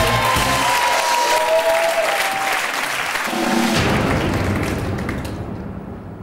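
Studio audience applauding over a music jingle; the applause dies away over the last couple of seconds.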